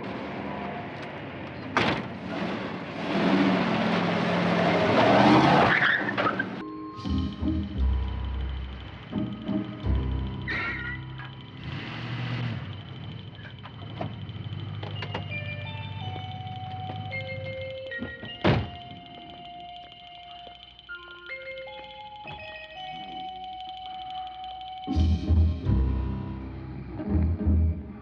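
A car door slams, then a car engine runs loudly for about four seconds as the car pulls away. After that, background score music with held notes plays, broken once by a sharp knock about two-thirds of the way through.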